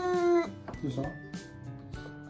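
A toddler's drawn-out whining call, one held note that arches slightly and stops about half a second in, as she leans out of her high chair demanding food. Soft background music continues underneath, with a short adult word about a second in.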